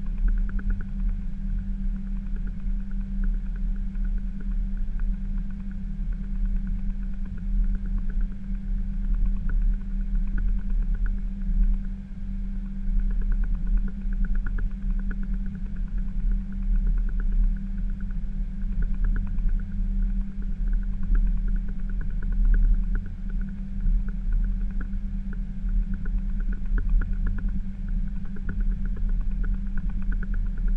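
Steady low rumble and hum inside an Airbus A320 cockpit, its engines running at low power with no spool-up.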